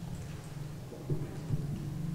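Low rumble with a couple of soft bumps in the middle: handling noise as a hand takes hold of a microphone stand.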